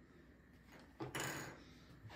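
Near silence, with one faint, short noise about a second in.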